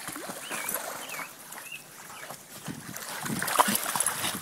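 Dogs moving and splashing in shallow water, the splashing growing louder in the last second or so, with a few short high squeaks in the first two seconds.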